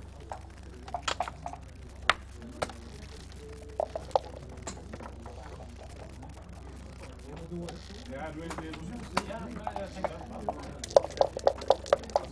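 Backgammon play: scattered sharp clicks of checkers and dice on the wooden board, then near the end a quick run of about seven clicks, dice being shaken in a dice cup.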